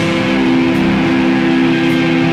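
Live doom metal band playing loud, electric guitar and bass holding one long chord.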